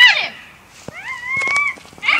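A high-pitched meow: one call that rises and then holds for about a second, after the falling end of an earlier call at the start.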